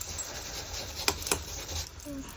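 A foam ink-blending sponge being rubbed and dabbed over paper, a soft scratchy rubbing with a couple of light taps around the middle.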